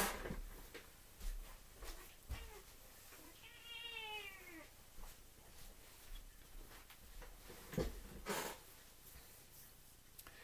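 A domestic cat meows once, a drawn-out call lasting just over a second that rises and falls in pitch, about three and a half seconds in. Around it are scattered knocks and rustles of movement, the loudest at the very start and around eight seconds in.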